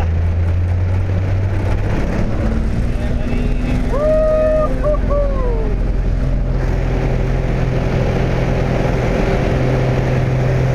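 Piston engine and propeller of a light high-wing plane, heard from inside the cabin as it rolls on the runway. The engine note shifts about two seconds in, and the engine grows louder after about six and a half seconds. Midway through, a voice calls out with a long gliding note.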